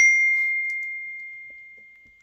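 A single bright ding, struck once, ringing one clear high tone that fades away slowly over about two and a half seconds.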